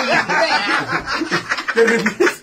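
People laughing in short chuckles and snickers, mixed with a little talk.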